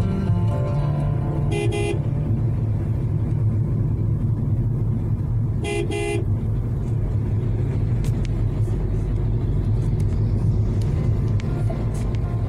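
A car horn gives two quick double toots, the first about a second and a half in and the second near six seconds, over the steady low rumble of a car driving on a wet road, heard from inside the cabin. Background music fades out within the first second.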